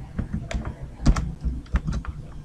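Typing on a computer keyboard: about six separate keystrokes in two seconds, the loudest a close pair about a second in.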